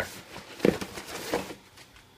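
Cardboard shipping box being handled and its flaps pulled open: rustling and scraping cardboard, with two sharp knocks a little under a second apart.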